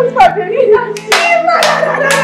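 A woman clapping her hands several times in delight while exclaiming and laughing, over quiet background music.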